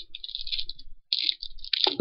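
Crinkling and crackling of a small jelly cup's plastic packaging as it is handled, in two runs with a short break about halfway.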